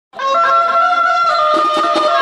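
Wedding band (baja party) music: a lead instrument plays a slow melody of held notes, without drums.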